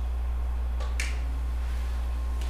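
A steady low hum, with one brief sharp click about a second in.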